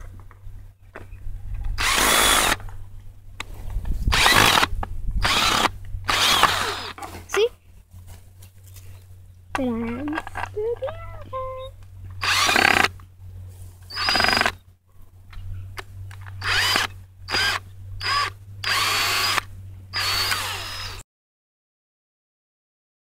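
Cordless drill driving screws into a wooden board, its motor whirring in many short bursts of a few tenths of a second to about a second, stopping and starting again.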